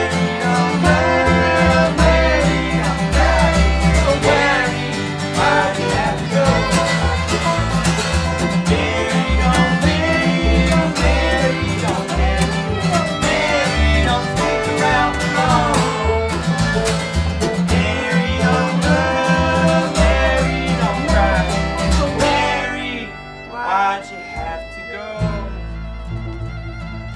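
Bluegrass string band playing, with banjo, acoustic guitar, upright bass and fiddle; the fiddle is prominent over a steady plucked bass line. About 22 seconds in the full band drops away and the playing turns quieter.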